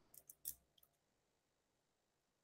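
About four faint, sharp keyboard keystrokes within the first second, the loudest about half a second in.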